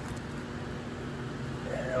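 Steady background noise: an even hiss with a faint, constant low hum, and no distinct events.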